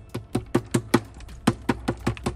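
Mentos candies knocking inside an upturned 2-litre plastic Coca-Cola bottle as it is shaken. The knocks come quickly, about five a second, in two runs with a short break just past the middle.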